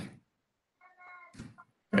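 A faint, short cat meow about a second in, followed by a soft click.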